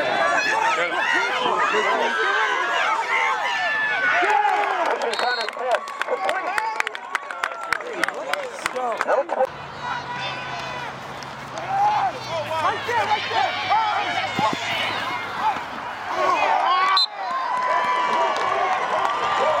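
Voices of players and spectators shouting and calling over one another at a football game, with scattered clapping and cheering. A run of sharp clacks comes through the middle, and a low steady hum sits underneath in the second half.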